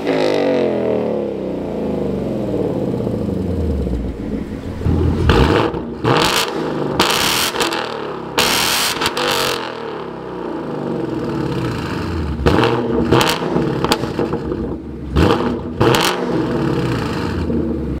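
2019 Ford Mustang GT's 5.0 L V8 revved in place through a Roush axle-back exhaust. At first, with the stock resonators, the engine note falls back slowly from a rev; partway through, with the H-pipe resonators deleted, it is blipped repeatedly in short, sharp revs.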